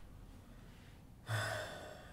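A man's short, sharp breath out, partly voiced with a brief low hum, a little past halfway through and fading within half a second, over quiet room tone.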